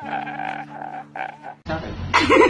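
A man's drawn-out crying wail, low and croaky, that cuts off suddenly near the end.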